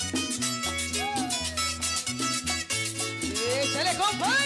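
Puerto Rican trulla played live by a jíbaro music ensemble: cuatro, guitar and güiro over a low bass line, in a steady lively rhythm. Near the end, a voice slides upward into a sung note.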